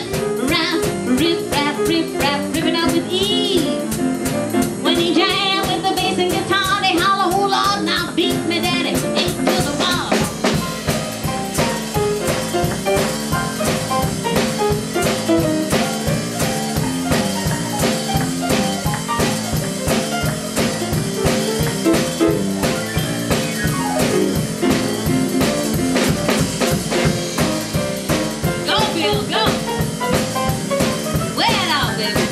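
Live boogie-woogie on a grand piano with a drum kit, the piano driving a steady eight-to-the-bar rhythm. A singing voice rides over it for roughly the first ten seconds, then piano and drums carry on alone.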